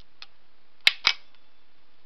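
Two sharp clicks about a fifth of a second apart, about a second in, from a 12 V DC main contactor whose solenoid is energised from a 9-volt battery held to its coil terminals.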